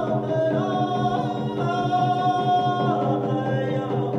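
Several men singing together in long, held notes, a Native American hand-drum song sung without drumbeats in this stretch.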